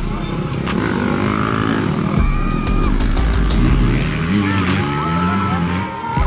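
Motocross dirt bike engines revving as bikes race past, the engine pitch climbing twice, with a song playing over them.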